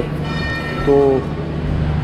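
A train horn sounding one steady, high-pitched blast of about a second, under a low steady hum.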